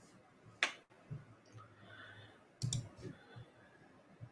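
A few faint, sharp clicks: one about half a second in and two close together near three seconds in, over low room tone.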